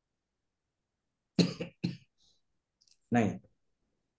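A person coughs twice, short and sharp, about a second and a half in, before a single spoken word.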